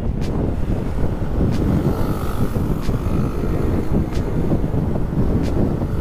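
Motorcycle being ridden along a road: wind rushing over the microphone, with the engine and tyre noise running steadily underneath.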